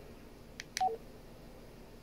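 Baofeng K6 handheld radio's keypad: a button click and a short two-note key beep, a higher note then a lower one, about a second in, as the menu steps to the next item.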